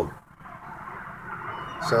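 Faint, low rumble of distant jet aircraft, growing slowly louder.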